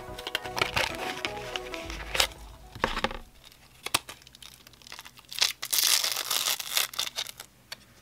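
Background music with handling clicks for about the first three seconds. Then the clear plastic blister pack of a microSD card crinkles and crackles in irregular bursts as hands pull it open, loudest between about five and a half and seven seconds in.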